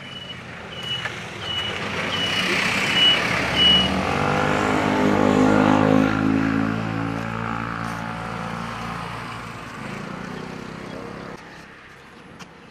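A truck passes on the road: its engine swells to a peak a few seconds in, then slowly fades away. A high warning beep sounds about twice a second through the first few seconds.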